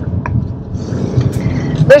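Steady road and engine noise inside a moving car's cabin, a low rumble with a faint hiss above it.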